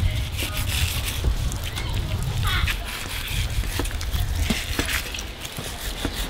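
A thin whiting knife sliding along between a gummy shark fillet's skin and flesh as the skin is pulled off, with small scrapes and clicks over a steady low rumble.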